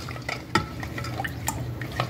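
A silicone spatula stirs a thin mix of milk and farina in a nonstick pot, with soft swishing and light scraping. Twice it knocks sharply against the pan.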